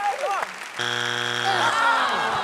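Game-show wrong-answer strike buzzer: one harsh, steady buzz lasting about a second, marking a third strike on the answer "peach". Shouting and laughter start up near its end.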